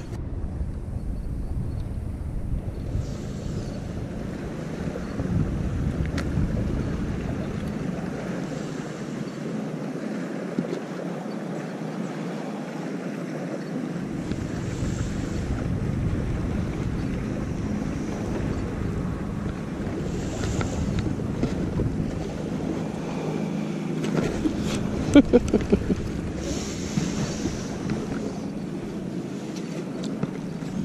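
Wind buffeting the microphone on open water, a rough low rumble that drops away for several seconds in the middle, with water lapping around a small boat underneath.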